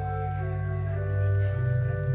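Organ music: held chords that change in steps, with the bass line starting to move about one and a half seconds in.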